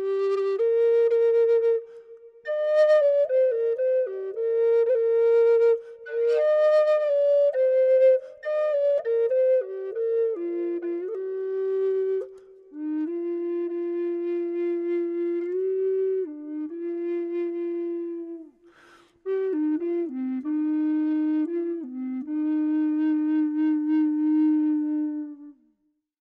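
A low Native American flute in C minor plays a slow solo melody that settles to lower notes as it goes on. It pauses briefly for breath about two seconds in and again near nineteen seconds, then ends just before the close.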